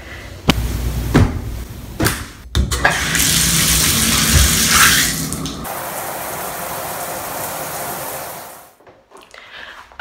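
A shower head spraying water into a tiled tub: a steady hiss that is louder at first, settles lower about halfway through and fades out near the end. A few knocks come before the water starts.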